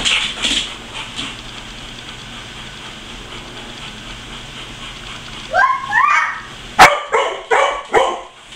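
A dog giving a few high, rising yelps about five and a half seconds in, then a sharp knock, then several short barks near the end.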